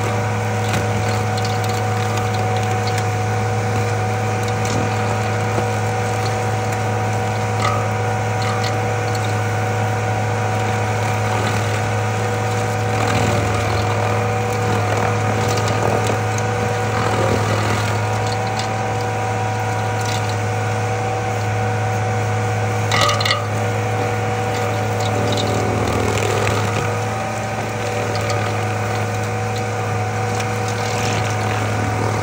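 Stump grinder running steadily under load with a constant deep hum as its cutter wheel grinds a small tree stump. There is a brief sharp clatter about three-quarters of the way through.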